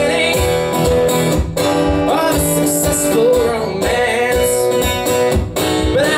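Acoustic guitar strummed in a live blues song, with a steady beat of low strokes underneath.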